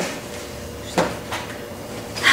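A single sharp knock about a second in, with a fainter tick just after: a book handled against the stack on a wooden table. Otherwise only quiet room tone.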